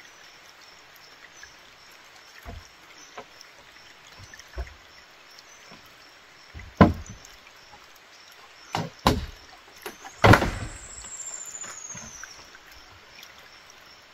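Knocks and thumps of a woven split-bamboo panel being handled and set down on a bamboo floor: a few light knocks, then louder ones about seven, nine and ten seconds in. A thin falling whistle follows the last, loudest thump.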